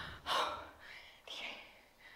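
A woman gasping for breath: two sharp, breathy gasps about a second apart, the first the louder.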